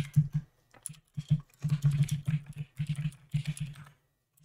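Computer keyboard typing: a few keystrokes, a short pause about half a second in, then a quick, steady run of key presses that lasts until near the end.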